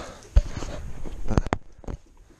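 A single low thump, then a few sharp clicks and knocks about a second later.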